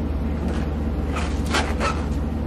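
A steady low hum, with a few brief soft noises in the second half.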